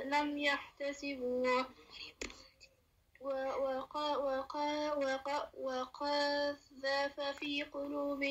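A young student's voice reciting the Quran in Arabic in a melodic chant, holding long steady notes in short phrases, with a brief pause a little over two seconds in.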